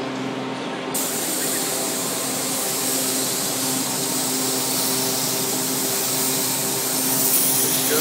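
A spray gun starts hissing suddenly about a second in and keeps spraying clear coat steadily onto a carbon paddleboard. Under it runs the steady hum of a ventilation fan.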